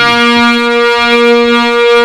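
Harmonium holding a steady chord, its reeds sounding sustained notes.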